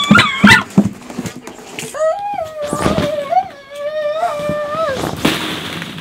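A toddler's voice: a short high squeal at the start, then one long wavering held call of about three seconds. Plastic ball-pit balls clatter as she climbs in, with a rustle of balls a little after five seconds as she drops onto them.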